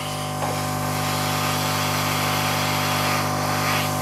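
Hot air soldering station blowing a steady hiss of hot air from its nozzle onto a CPU socket pin, heating the solder so the pin can be pushed into place.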